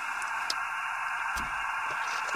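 Steady, band-limited hiss of an RTL-SDR receiver's audio in upper-sideband (SSB) mode with no signal tuned in, with a faint click and a soft rustle partway through.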